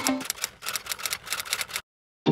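Typewriter key clicks, a quick run of sharp clicks that stops abruptly a little before the end, leaving dead silence.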